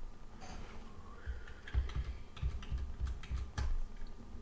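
Computer keyboard keys pressed in a quick run of about ten clicks over two seconds, starting a little before halfway through.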